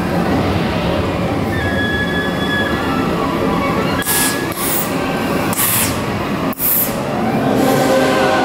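Indiana Jones Adventure ride vehicle running along its track with a steady rumble and a thin high squeal for a second or two. Then come about five short, sharp hissing bursts in quick succession.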